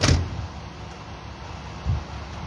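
A loud thump right at the start, then a steady low rumble of an idling vehicle, with a second, duller thump near the end.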